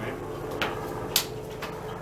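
A few sharp slaps of hands and forearms meeting as two partners strike and parry in a hubad trapping drill, the loudest a little past the middle, over a steady faint hum.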